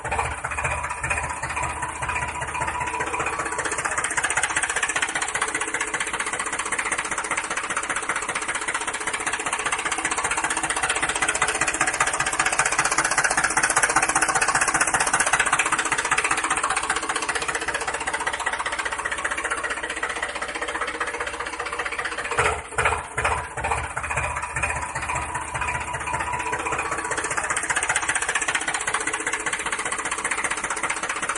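A motor running steadily with an engine-like chug; it gets louder around the middle and beats in rapid, even pulses for about a second about two-thirds of the way through.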